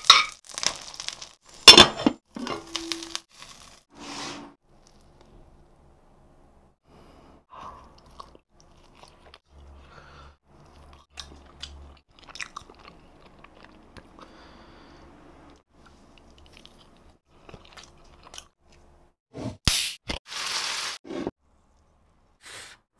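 Close-miked ASMR eating sounds: food crunching and being chewed. The crunches are loudest in the first couple of seconds and again in a burst near the end, with mostly quiet stretches between.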